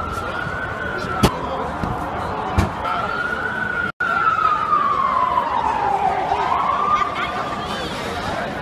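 Emergency vehicle siren wailing, its pitch sliding slowly up and down, over crowd voices. Two sharp clicks sound in the first three seconds, and the sound cuts out for an instant about halfway through.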